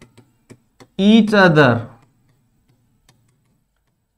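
Several light, sharp ticks of a stylus tapping on a touchscreen whiteboard as words are handwritten on it, followed about a second in by a single drawn-out spoken word lasting about a second.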